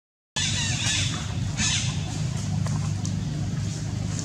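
Two short, high-pitched animal calls about a second apart, over a steady low rumble. The sound cuts out for a moment at the very start.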